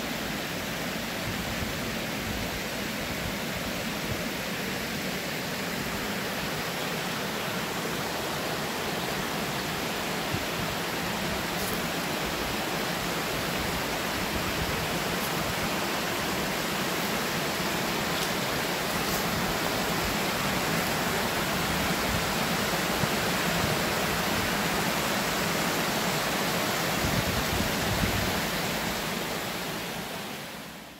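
Shallow stream water running over rocks and stones: a steady rushing and splashing.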